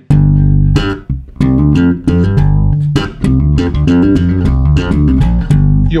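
Electric bass guitar played slap style with up-thumb strokes, the thumb driven through the string rather than bounced off it: a fast run of low, percussive slapped notes, each with a sharp attack, ringing between strokes.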